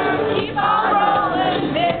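Live pop-rock band performance: a male lead vocal sung into a handheld microphone over electric guitar and the band, heard from the audience through a hall PA.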